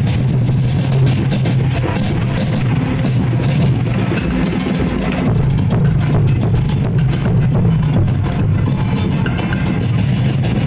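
Loud, drum-heavy music accompanying a street dance, with a dense, steady low beat.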